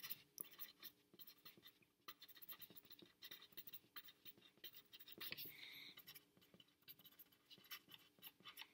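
Faint scratching of a pencil writing on lined paper, in quick irregular strokes, with a brief high tone a little past halfway.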